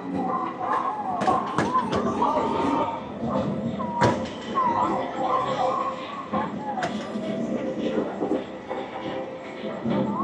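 Padded mallet striking the pop-up targets of a whack-a-mole arcade game: several sharp thuds at irregular intervals, over the din of voices and electronic game sounds in a busy arcade.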